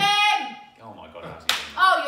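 Football fans' excited cries: a drawn-out vocal exclamation at the start, a single sharp hand clap about one and a half seconds in, and another cry right after it.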